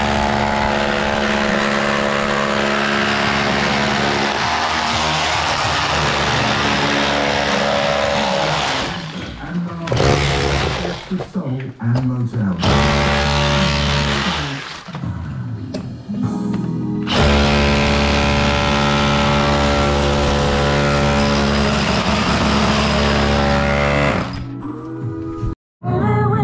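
Hammer drill with a chisel bit cutting a pipe chase into a plastered wall, running in long bursts with a few short stops.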